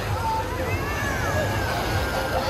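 Crowded beach ambience: a steady wash of small waves breaking on the sand, with many distant voices chattering and calling.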